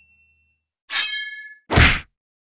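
Cartoon sound effects: a metallic clang with a ringing tail about a second in, then a short, heavy thud just before the end.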